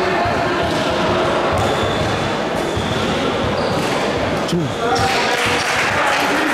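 Basketball bounced on a hardwood court floor, with a steady background of voices and chatter in the gym.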